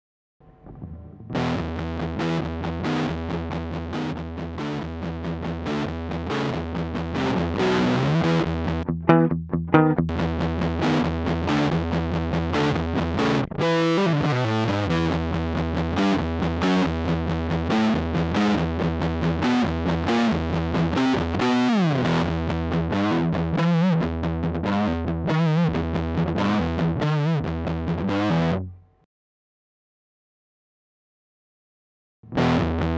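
Electric guitar played through a Dophix Nettuno silicon fuzz pedal (2N5088 transistors), with the tone knob turned up so the notes cut through without more fuzz. The distorted riffs run over a looped backing part, with a couple of downward slides, and stop abruptly shortly before the end.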